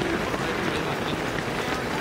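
Footfalls of a large pack of runners on a tarmac road, a steady patter of many overlapping steps, with indistinct voices mixed in.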